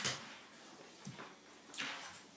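Two dogs, a bloodhound and a brindle American Bulldog–Rottweiler cross, play-fighting, making a few short vocal sounds; the loudest comes right at the start, with more about a second in and near the end.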